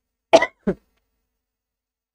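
A woman coughs twice in quick succession, two short coughs into her hand about a third of a second in.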